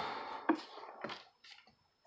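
Soft paper rustling with a couple of light taps, a picture book's page being turned; the rustle fades after about a second, and two short brushing sounds follow.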